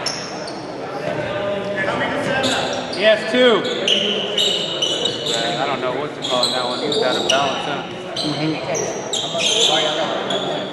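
Indoor basketball game in an echoing gym: sneakers squeaking repeatedly on the hardwood floor, players shouting to each other, and a basketball bouncing.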